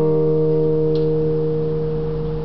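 Guitars in a live band letting a chord ring out, several notes held steady and fading slightly, with no new strums.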